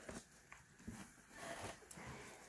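Faint handling noise of a zippered fabric pencil case full of colored pencils being closed and lifted away: soft rustling with a few light clicks.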